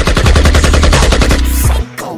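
Rapid machine-gun fire sound effect laid over the deep bass of a hip hop beat. The burst stops about a second and a half in.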